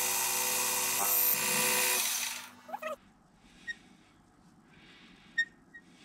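Metal lathe running with a steady whine of several tones, switched off about two seconds in and running down to quiet. A few light clicks follow as a micrometer is set on the turned workpiece.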